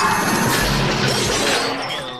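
Crash sound effect: the tail of a loud smash, debris clattering and dying away near the end, with music under it.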